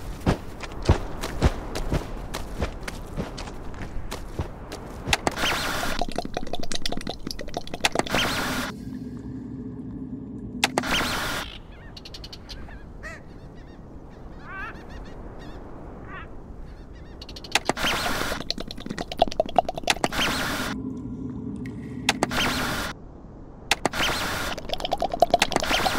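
Cartoon sound effects: a rapid patter of sharp taps for the first few seconds, then a cartoon bird's repeated quacking squawks, broken by loud bursts of noise.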